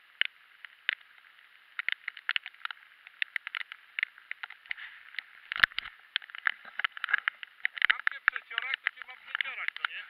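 Irregular ticks and taps of rain and handling on a waterproof camera housing, sounding thin and muffled through the case, with one louder knock about five and a half seconds in.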